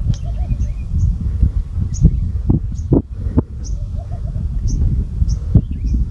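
A small bird chirping repeatedly in short, high notes over a loud, steady low rumble, with a few sharp knocks.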